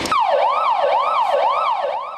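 KAMAZ fire engine's siren wailing in quick rising-and-falling sweeps, about two a second.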